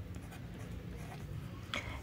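Pen tip scratching faintly on paper as a handwritten number is written, over a low steady room hum.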